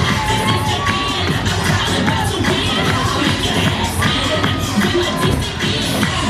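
Loud upbeat music with a steady beat, under many young voices shouting and cheering together.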